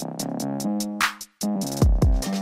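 Background electronic music with a drum-machine beat: sustained synth notes over quick high ticks, a snare hit about a second in, and a deep bass drum that falls in pitch near the end.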